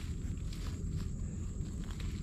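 Dry grass stems rustling with a few faint clicks as a hand parts them over muddy ground, over a steady low rumble.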